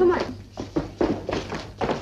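A man's voice at the start, then a run of about five dull knocks and thuds, with brief voices among them.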